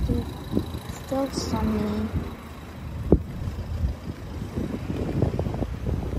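Outdoor street ambience: a steady low rumble of road traffic, with one sharp click about three seconds in.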